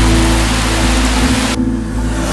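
Trailer score holding a steady low bass drone, under an even hiss of rain that drops away sharply about one and a half seconds in.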